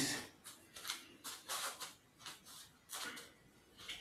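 Soft footsteps shuffling on a floor mat as a person turns and walks a few steps: about six faint, short scuffs.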